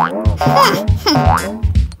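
Playful cartoon background music with springy 'boing' sound effects: three bouncing pitch glides over a steady low beat. The glides stop suddenly at the end.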